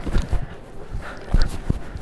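Limping footsteps and a wooden walking cane knocking on a hard store floor, heard as a few uneven thumps.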